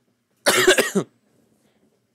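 A man coughing into the microphone about half a second in: one brief, harsh cough lasting about half a second.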